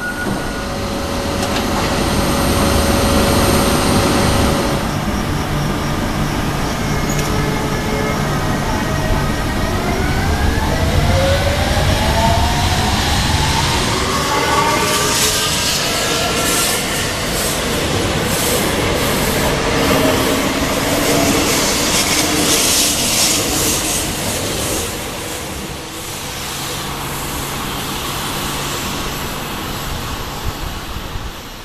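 Renfe Civia electric commuter train pulling out and accelerating: its traction motors' whine climbs in several rising steps, followed by the clatter of the wheels over the rails as the cars go by.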